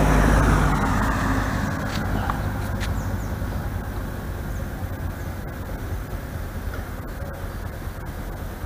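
A motor vehicle driving past on the road, its engine sound loudest at the start and fading away over several seconds into steady outdoor background noise.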